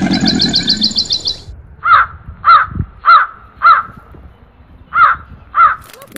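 A bird cawing six times, the calls about half a second apart with a short break before the last two. In the first second and a half a rapid high-pitched trill runs and then stops.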